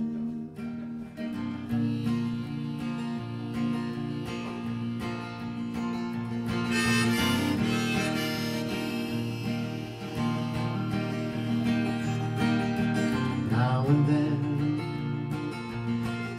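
Harmonica, played from a neck rack, taking an instrumental solo over acoustic guitar accompaniment.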